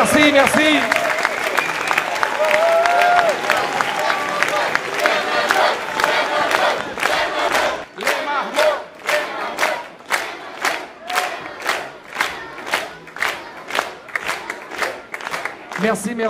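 Concert crowd and a children's choir applauding and cheering after a song, with shouts and voices in the din. About halfway in, the clapping settles into a steady beat in unison, roughly one and a half claps a second.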